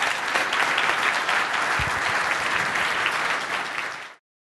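Audience applauding steadily: many hands clapping at once.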